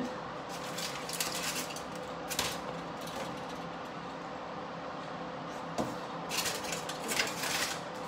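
Kitchen handling sounds: brief brushing and light clattering as things are moved about, with a single sharp click about six seconds in, over a steady faint appliance hum.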